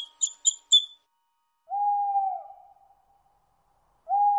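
Cartoon sound effects: four quick, high bird chirps in the first second, then a single owl hoot about two seconds in, one smooth held tone that dips at the end and fades away.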